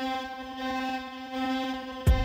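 Synthesizer holding a single steady note, a buzzy tone rich in overtones, playing on its own.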